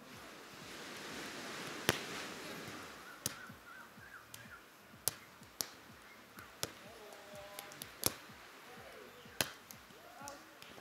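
A beach volleyball rally: hands and forearms strike the ball in a string of sharp slaps about a second apart, the loudest about two seconds in. A rushing hiss fills the first few seconds, and faint voices carry in the background.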